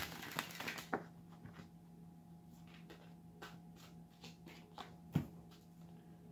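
A deck of tarot cards being shuffled and handled: the riffle shuffle ends in the first second, followed by faint scattered clicks and taps of the cards, with one sharper snap about five seconds in.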